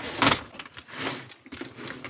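Hard-shell suitcase being handled and pulled from the top of a stack of luggage: a brief scraping rustle near the start, then softer shuffling.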